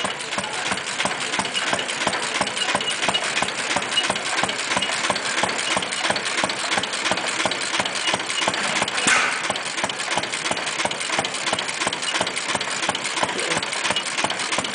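Antique stationary gasoline engine running steadily, a rapid, even train of firing beats with no gaps.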